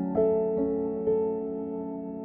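Slow, gentle background music on an electric piano: three sustained notes struck about half a second apart, then left to ring and fade.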